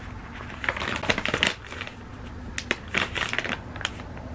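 Stiff plastic pouch of flaxseed meal crinkling and rustling as it is tipped over a bowl and handled, in irregular crackles that are thickest about a second in and again around three seconds.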